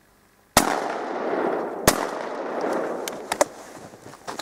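Two gunshots about 1.3 seconds apart, the first the louder, each followed by a long rolling echo that fades slowly.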